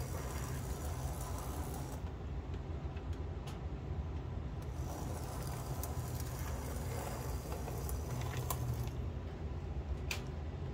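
Scratch-built model locomotive with worm-gear-driven trucks running slowly along the track: a steady low mechanical hum from the motor and gears, with a few faint clicks.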